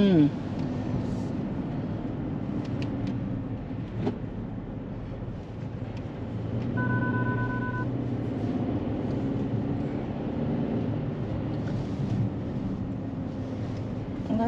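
Road and running noise inside a moving car's cabin, a steady low hum. About halfway through, a steady electronic beep sounds for about a second.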